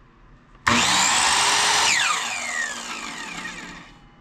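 A Ryobi 10-amp, 7-1/4-inch sliding compound miter saw is switched on by its trigger and runs free at full speed with a loud whine. After about a second the trigger is released and the motor and blade wind down, the whine falling steadily in pitch as it fades.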